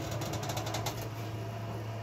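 Workshop machine humming steadily, with a rapid run of sharp metallic ticks in the first second as an iron sheet is worked under it.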